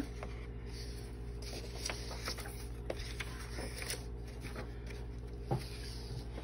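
Faint rustling and scattered light clicks of sheets of scrapbook paper being handled and set down, with one soft thump about five and a half seconds in, over a steady low hum.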